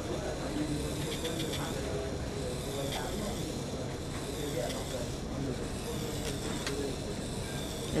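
Faint steady whir of a low-speed rotary endodontic handpiece driving a nickel-titanium file down a canal in a plastic training block, under a steady hiss of room noise and faint distant voices.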